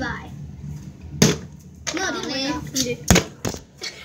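A child speaking briefly, with a sharp knock about a second in and two more close together around three seconds in.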